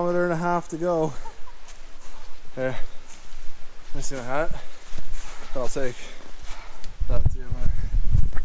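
A person's voice making short wordless sounds, its pitch bending up and down. Low bumping and rumbling begins about seven seconds in as the camera is jostled.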